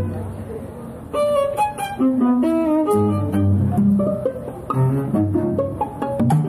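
Live string ensemble playing, bowed and plucked (pizzicato) strings with cello and double bass underneath. A held chord fades over the first second, then a quick melody comes back in about a second in.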